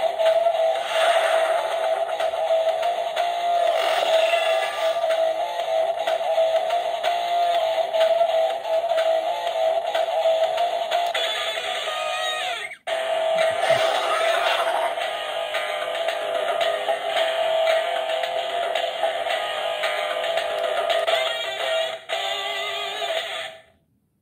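Power Rangers Dino Fury Morpher toy playing its electronic music and sound effects, including a sung or synthetic voice, through its small built-in speaker: loud and thin, with little bass. It breaks off briefly about 13 seconds in, then runs on and cuts off suddenly near the end.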